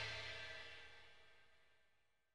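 The last chord and cymbal of a rock backing track ringing out and dying away within the first second, then near silence.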